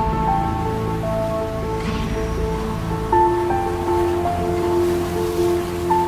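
Slow instrumental background music of sustained, slowly changing notes, with a soft wash of noise like sea waves swelling twice.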